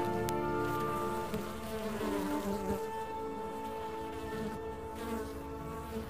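Honeybees buzzing, a steady hum of several overlapping pitches, while orchestral music fades out over the first seconds.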